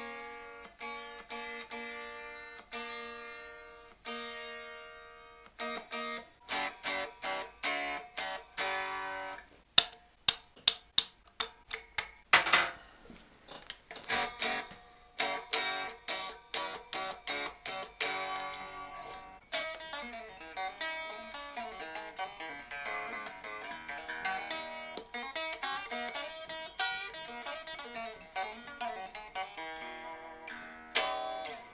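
Fender Mexican Stratocaster with fresh strings being tuned up by ear. Single notes are plucked and left to ring about once a second, then sharper strums, loudest about ten seconds in, then busier playing to check the tuning.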